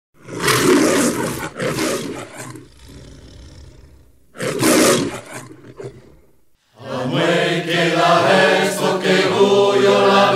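Three loud rushing bursts of noise, two close together at the start and one about four and a half seconds in, then after a brief silence, from about seven seconds in, a choir of low voices singing together.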